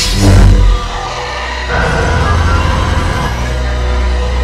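Film trailer music: a deep low hit in the first second, then a steady low drone with held tones beneath it.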